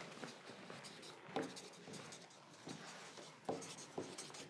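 Pencils scratching on paper as several people write, with a few faint taps.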